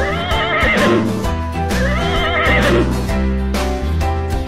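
Two horse whinnies, each about a second long with a warbling pitch, the first at the start and the second about one and a half seconds in, over upbeat background music.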